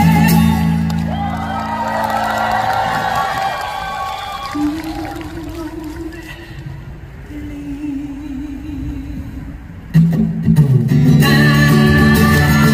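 Live acoustic-guitar song with a male voice singing: the strumming stops soon after the start, leaving quieter singing with long held notes, then the guitar and full voice come back in loudly about ten seconds in.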